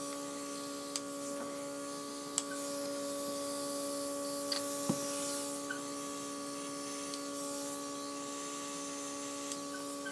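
Airbrush makeup compressor humming steadily, with a faint hiss of air and eyeshadow spraying from the airbrush gun in the middle of the stretch. A few light clicks.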